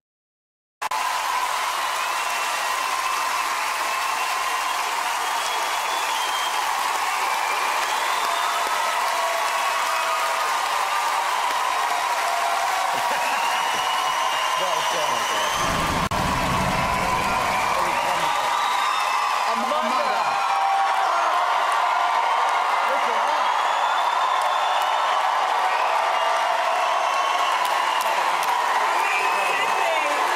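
Large theatre audience applauding and cheering in one long, steady ovation, with whoops and shouts over the clapping. It starts abruptly about a second in.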